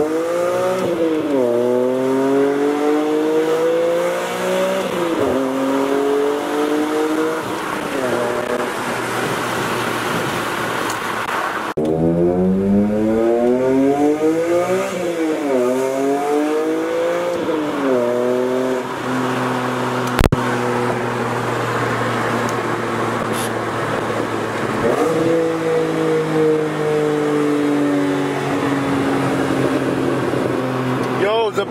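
BMW E46 M3's S54 inline-six with an aftermarket Top Speed muffler, heard inside the cabin, accelerating hard through the gears. Its pitch climbs and drops at each upshift, over two separate pulls, then settles to a steadier cruise before climbing again near the end.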